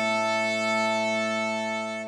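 Bagpipe music: one long chanter note held over the steady drones.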